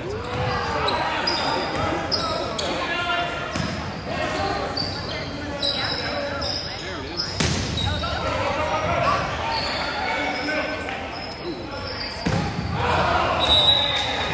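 Indoor volleyball rally: repeated sharp smacks of the ball being hit, with voices calling out, echoing in a large gym. The loudest hit comes about halfway through.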